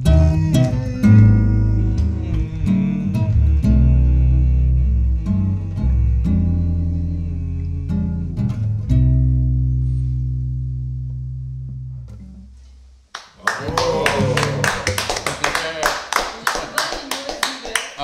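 Acoustic guitars and bass play the closing bars of a live song, ending on a long chord that fades out about thirteen seconds in. The audience then claps and cheers.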